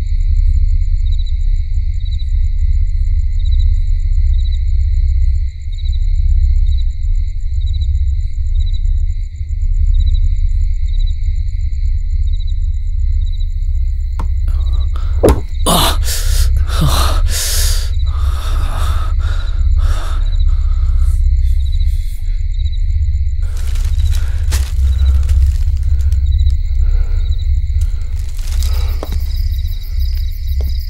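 Suspense film score: a loud, low rumbling drone under steady high sustained tones with a faint regular pulse. About halfway through comes a cluster of sharp hits and falling sweeps, with more hits a few seconds later.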